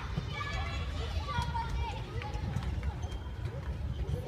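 Voices talking in the background, faint and off-mic, over a constant low rumble.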